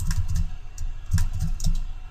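Computer keyboard keys and mouse buttons clicking in short, irregular runs, two clusters of clicks with a dull knock under each.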